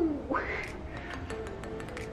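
A short strained vocal sound from a woman exerting herself. Its pitch falls and then rises sharply near the start, over faint music with light ticks.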